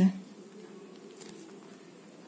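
Soft scratching of a pen writing on paper, over a faint steady buzzing hum.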